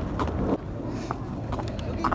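Outdoor city ambience: a steady low rumble with scattered faint voices of people nearby and a few short knocks.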